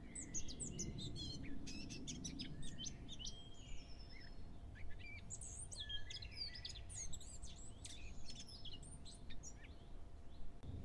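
Faint birdsong: several small birds chirping and twittering in quick, scattered calls over a low, steady background hiss.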